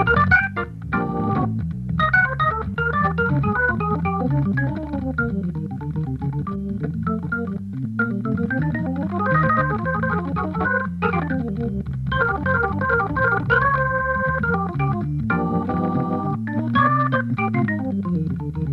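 Jazz improvisation on a Hammond organ: quick runs of notes over a bass line, with chords held for a second or two about halfway through and again near the end.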